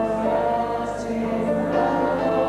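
Gospel worship singing by several voices, with long held notes.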